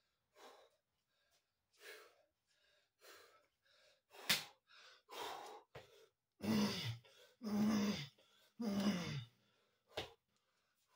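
A man breathing hard and gasping between burpee reps, worn out late in a long set. There is one sharp slap on the mat about four seconds in, then three loud, voiced groaning exhales in a row near the end.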